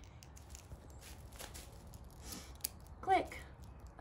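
Metal links of a Herm Sprenger prong collar clicking and scraping faintly as the collar is fastened snug, high on a dog's neck.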